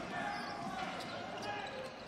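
Basketball being dribbled on a hardwood court, a few faint bounces over a low crowd murmur in the arena.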